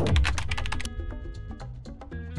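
A keyboard-typing sound effect as a title types itself out: a fast run of clicks for about the first second, then sparser clicks, over background music, with a low thud at the very start.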